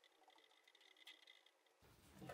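Near silence: room tone with a few faint soft scuffs.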